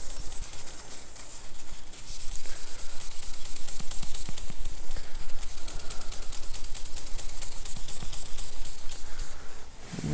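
A cloth rubbing quickly back and forth over a MacBook screen, scrubbing off its cleaner-softened anti-glare coating. The strokes come as a fast, even train of rasping pulses from about two seconds in.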